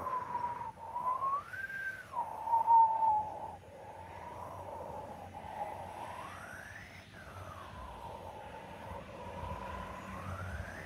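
A single eerie, whistle-like tone holds near one pitch with a slight waver. It slides up and back about a second and a half in, and rises to a higher note and falls away again about six to seven seconds in.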